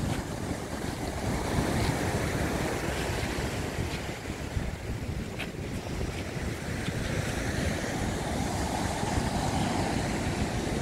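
Ocean surf breaking and washing up a beach in a steady rush, with wind buffeting the microphone.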